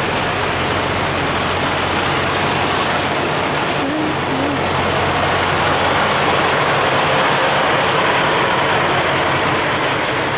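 Parked semi-truck diesel engines idling close by: a loud, steady diesel rumble with a dense hiss over it.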